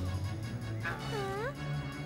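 Background music with a low steady drone. About a second in, a cartoon character gives one short, high, wordless call whose pitch dips and then rises.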